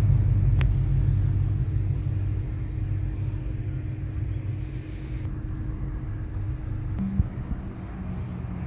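Lamborghini Gallardo Superleggera V10 engine idling with a deep, steady rumble that slowly gets quieter over the seconds.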